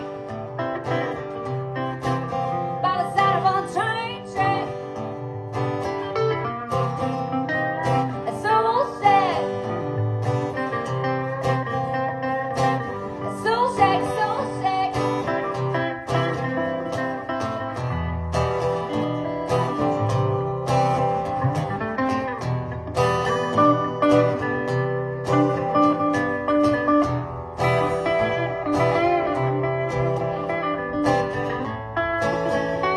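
Two acoustic guitars playing a song together live, strummed chords with lead notes that bend and slide in pitch.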